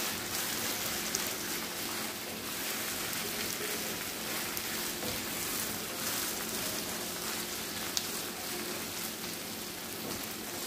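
Okra, tomatoes, peppers and saltfish sizzling steadily in a frying pan as they are stirred with a wooden spoon, with two light clicks, about a second in and near the end.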